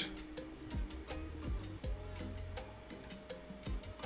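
Quiet background music of a few held notes, with soft, irregular clicks or ticks throughout.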